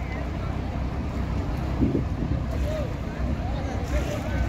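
Boat engine idling with a steady low rumble.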